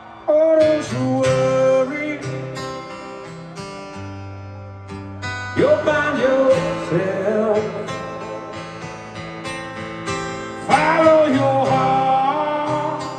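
Live acoustic performance: acoustic guitar strumming with a singing voice coming in three times, about every five seconds.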